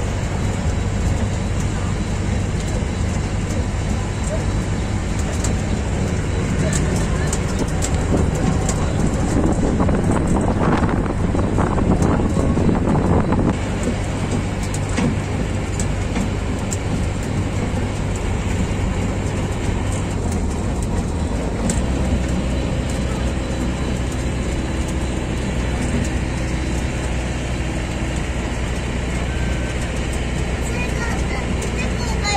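Tourist train riding along steadily, its engine humming low under a constant running rumble with small rattles and clicks. About two-thirds of the way through, the hum changes pitch.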